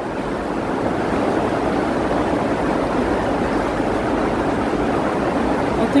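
Steady rushing noise of torrential rain and water, even and unbroken throughout.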